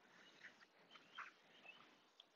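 Near silence, with a few faint, short bird chirps.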